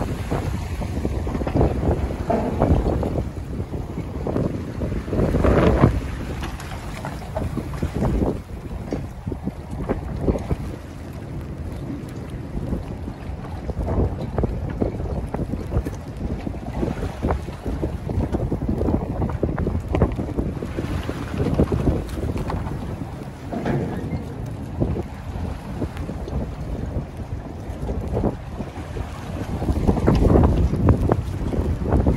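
Gusty wind buffeting the microphone over choppy harbor water slapping against floating docks that are rocking hard, in uneven swells.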